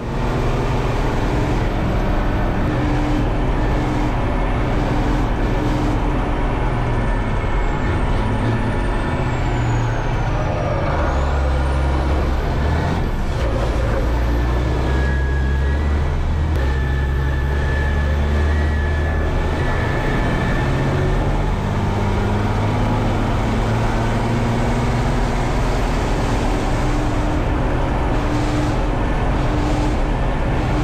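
Race truck's diesel engine running hard on track, heard from the passenger seat inside the cab, with loud continuous engine and road noise; the deep rumble grows heavier for several seconds in the middle.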